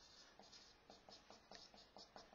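Faint scratching of a marker writing on a whiteboard, a run of short irregular strokes.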